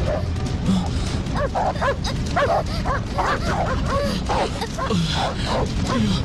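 Dogs barking and yipping in a quick, irregular run that starts about a second and a half in, over background music.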